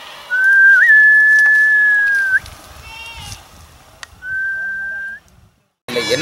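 A person whistling two long, nearly level notes. The first lasts about two seconds with a quick upward flick early on; the second is shorter and ends on a slight rise.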